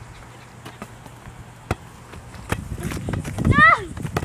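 A volleyball being thrown and landing, giving a few sharp separate knocks, followed near the end by a girl's short loud exclamation that falls in pitch.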